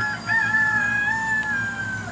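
A rooster crowing: a short note, then one long drawn-out crow that sags slightly in pitch at the end.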